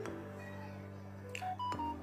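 Faint low steady tones, then a quick upward run of short electronic beeps about a second and a half in.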